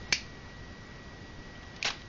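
Two clicks of a small inline cord switch on an aquarium lamp's cable, a sharp one just after the start and a slightly longer one near the end, switching the tank light on.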